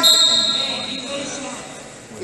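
A loud, drawn-out shout, as from a coach urging a wrestler on, with a high steady tone sounding along with it that fades over about a second and a half.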